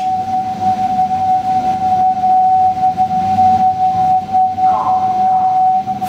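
KONE EcoDisc gearless traction elevator drive giving a loud, steady high-pitched whine at one constant pitch as the car travels, over a low rumble of the ride.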